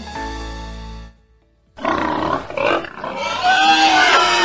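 Background music that breaks off about a second in; after a short silence a pig grunts and then squeals with bending, wavering calls over the music.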